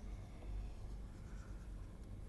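Faint scratching of a stylus on a tablet screen as a circle is drawn, over a low steady hum.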